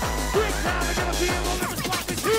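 Hardcore gabber track: a fast, distorted kick drum pounding at about four beats a second under swooping synth glides. The kick drops out about three quarters of the way in, leaving only the sweeping synth sounds.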